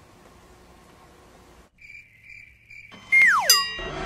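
Comic cricket-chirp sound effect over an awkward near silence, a steady high chirping tone with short breaks. About three seconds in, a loud falling-whistle comedy sound effect sweeps steeply down in pitch, followed by a shorter second drop, and music begins near the end.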